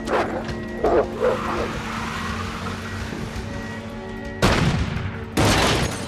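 Film soundtrack: a low, droning music score with a few short dog barks in the first second or so. Near the end come two loud, harsh bursts about a second apart.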